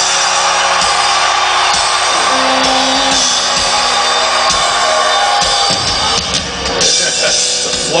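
Live rock band playing through a festival PA, drums to the fore, with crowd voices mixed in.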